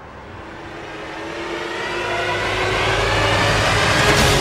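A sustained swell of steady tones that grows louder throughout, building into the opening theme music of a TV programme.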